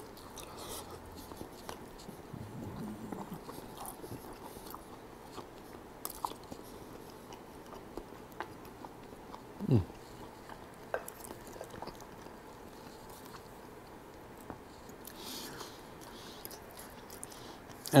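Quiet chewing and biting of a baked chicken wing, with small scattered mouth clicks. One short falling vocal sound comes about ten seconds in.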